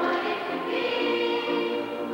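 Stage chorus of many voices singing together in a musical number, with held, changing notes.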